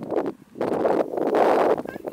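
Rustling noise on the camera's microphone, from handling or wind, starting about half a second in and running on loudly.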